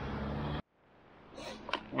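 Low steady outdoor background hum that cuts off abruptly about half a second in, leaving silence; faint outdoor ambience with a few light clicks then fades back in, and a man's voice starts at the very end.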